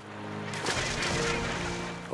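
Soundtrack music of held notes, with the rushing splash of northern gannets plunge-diving into the sea swelling about half a second in and fading near the end.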